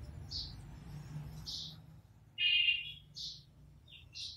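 A small bird chirping in short, high calls several times, the loudest a longer buzzier chirp about two and a half seconds in, over a faint steady low hum.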